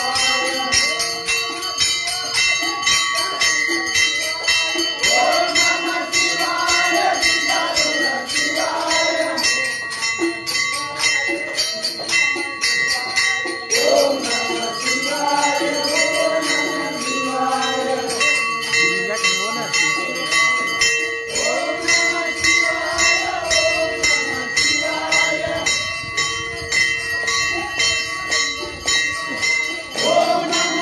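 Men singing a devotional bhajan together, backed by fast, continuous jingling of small hand cymbals and steadily ringing bells.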